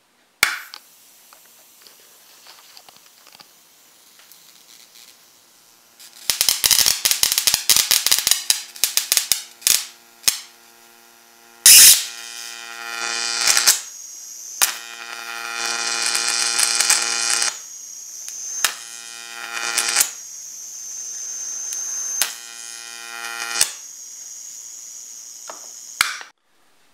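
High-voltage arcing from a flyback transformer driven by a four-lamp fluorescent-light ballast. A switch clicks on and a faint hum follows. Then come several seconds of rapid snapping sparks, a loud crack about twelve seconds in as the arc strikes, and a sustained buzzing arc with a high whine that breaks off and restarts several times.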